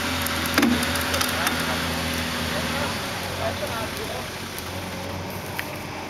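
Nissan Patrol 4x4's engine idling steadily, easing a little in level about three seconds in. A single sharp knock sounds about half a second in.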